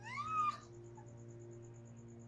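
A cat's meow: one call that rises and falls in pitch, lasting about half a second at the start, over a low steady musical drone.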